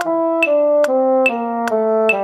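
A trombone tone playing legato down an F major scale, one note every click, over a metronome clicking about two and a half times a second.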